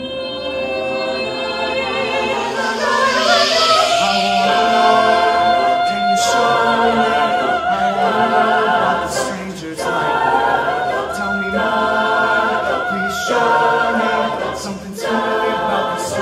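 Mixed-voice a cappella group singing held chords with no clear words, a high voice with vibrato on top, the chords changing every couple of seconds, with a few sharp hits between them.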